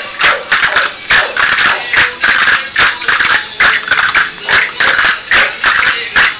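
Music for a Murcian jota, with sharp clicks over it in a rhythm that repeats about once a second.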